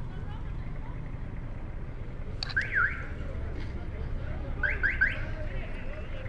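Steady low rumble of street traffic, broken by short high chirps: two sweeping chirps about two and a half seconds in, then three quick rising chirps near the end.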